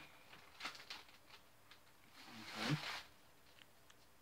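Faint rustling and crinkling of a paper gift bag, its tissue paper and a plastic wipes package being handled, with a louder rustle about two and a half seconds in.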